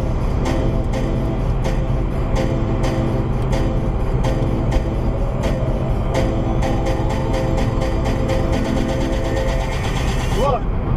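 Background music with a steady beat, over the low rumble of a car driving on the highway.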